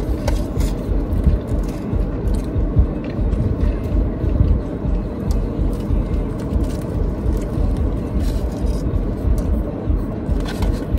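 Close-up eating sounds: chewing bites of a sub sandwich and crinkling its paper wrapper, with small clicks here and there over a steady low rumble.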